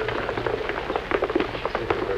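Footsteps of a group of men walking on a hard floor: many irregular clicks and scuffs over a steady low hum.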